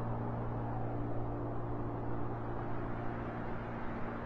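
A piano chord left to ring and slowly fade between phrases, over a steady hiss of background noise.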